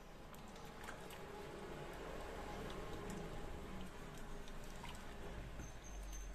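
Chicken and potatoes simmering in sauce in a wok while being stirred with a silicone spatula: a faint, steady wet cooking sound with a few soft taps.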